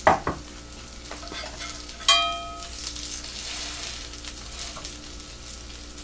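A cauliflower fritter sizzling as it fries in oil in a skillet, a steady hiss. A sharp knock at the start and a ringing metallic clink about two seconds in come from a spatula being handled around the pan.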